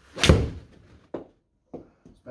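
A 7-iron striking a golf ball off a hitting mat in a simulator bay: one sharp, loud strike about a quarter second in, with a short tail as the ball hits the impact screen. Two softer knocks follow, a little after a second and again near the end.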